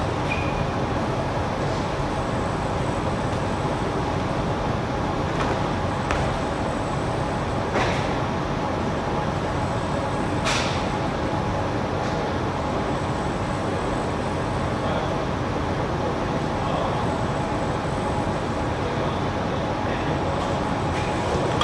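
Steady room noise of an indoor sports hall, a constant hum and hiss, with a few short, sharp clicks scattered through, the clearest about halfway.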